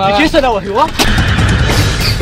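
A man speaking, then about a second in a sudden hit sets off dramatic soundtrack music with a deep, rumbling drum underneath.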